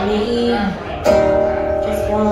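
A woman singing to her own strummed acoustic guitar. A sung note slides down just before the middle, then a fresh strummed chord comes in and rings on.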